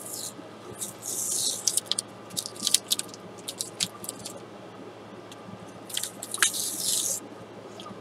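Blue painter's tape being peeled off watercolor paper: two longer rasping peels, about a second in and again around six seconds in, with crackling clicks between as the tape comes away.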